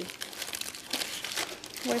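Plastic-wrapped Quaker yogurt granola bars crinkling and rustling in their cardboard box as a hand rummages through them.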